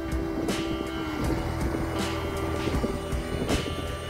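Wind rumbling on the microphone, with background music playing under it.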